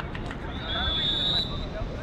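A whistle blown once, a single steady high tone lasting about a second, over background chatter of voices around the court and a low rumble on the microphone.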